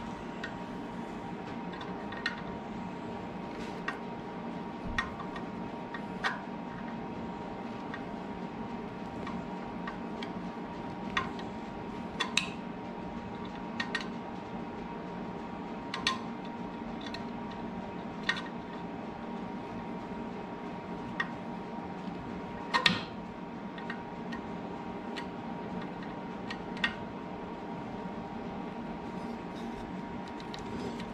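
Scattered light clicks and knocks, one every second or two with a louder double knock past the middle, from a turned wooden pattern being handled and set in the metal pattern holder of a Shopsmith lathe duplicator. A steady hum runs underneath.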